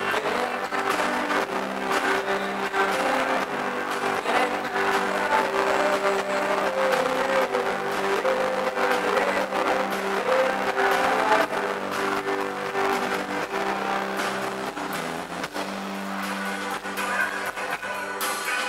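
Live rock band playing: electric guitar chords held over drums with steady cymbal hits, at an even level throughout.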